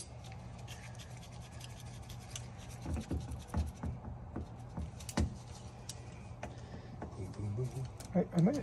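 A wrench clicking and scraping on a threaded fitting at an air conditioner air handler's drain outlet as the fitting is worked loose, in scattered light clicks over a steady low hum.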